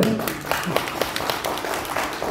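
Audience applause: many hands clapping together in a brief burst.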